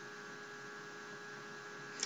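Faint steady electrical hum with an even hiss, the recording's background noise.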